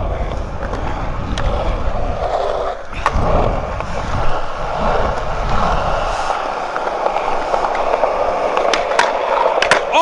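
Skateboard wheels rolling over a concrete skatepark surface: a steady rolling noise with a low rumble that eases about six seconds in, and a few sharp clicks along the way.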